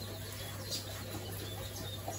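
Small birds chirping faintly a few times, over a steady low hum.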